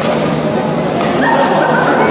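Court shoes squeaking on the badminton court floor in several short high chirps in the second half, over the steady din of the hall.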